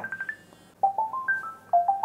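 Incoming-call ringtone: a simple electronic melody of single clear tones stepping upward. It starts about a second in and begins again near the end.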